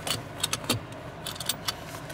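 A string of light clicks and small rattles of things being handled, over a steady low hum in a car's cabin.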